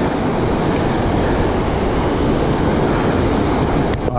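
The Jacks River rushing loudly over rapids, swollen after a flash flood: a steady, unbroken roar of white water.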